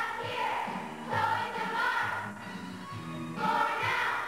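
A children's choir singing together, in phrases of held notes.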